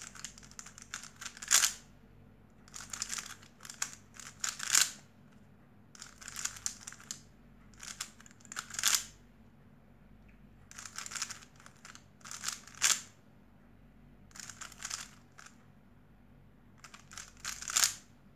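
Stickerless 3x3 speedcube being turned by hand: quick runs of plastic clicking and scraping as the middle slice and top layer are flicked through an M and U algorithm, in about seven short bursts with pauses of a second or two between them.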